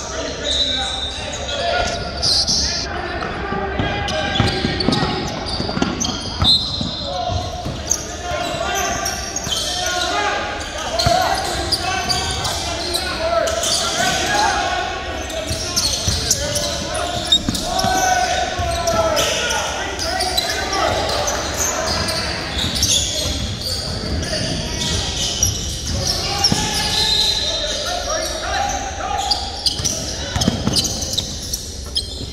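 A basketball bouncing intermittently on a hardwood gym floor during live play, echoing in the large hall, with indistinct voices throughout.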